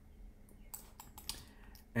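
Faint, irregular computer clicking, a handful of short clicks in the second half, over a low steady hum.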